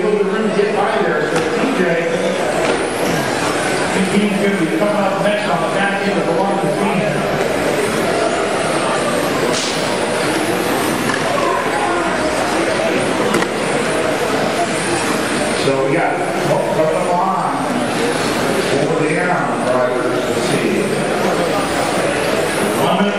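Electric 1/10-scale touring cars with 10.5-turn brushless motors running laps of an indoor carpet track, with a man talking over them throughout.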